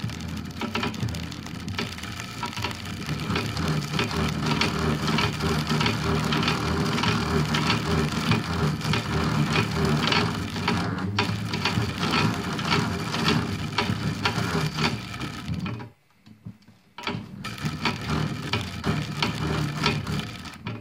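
A brushless front-load washing-machine motor, hand-cranked as an AC generator, grinding under the load of its shorted output wires while an electric arc crackles where the copper wires touch. The sound stops for about a second near the end, then starts again.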